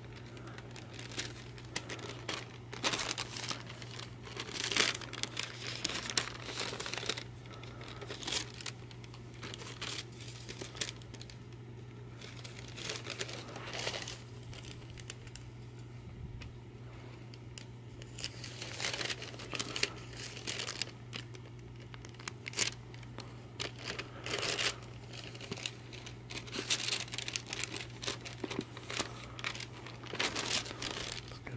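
Wax paper crinkling and rustling in irregular spurts as it is handled and fitted into a paperback book, over a steady low hum.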